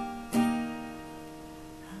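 Acoustic guitar with a capo, a chord strummed once about a third of a second in and left ringing and fading, with the next strum at the very end.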